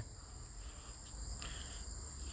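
Faint background sound: a steady high-pitched ringing over a low hum, with a faint tick about one and a half seconds in.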